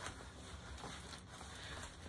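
Faint rustling of a large plastic-covered diamond painting canvas as it is unrolled and handled, with a few small ticks.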